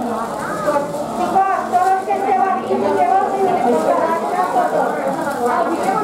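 People talking in a room, the words indistinct.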